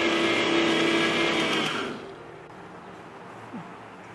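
Electric mixer grinder running at maximum speed, a steady motor whine while it grinds raw rice into puttu flour. The motor is switched off just under two seconds in and winds down.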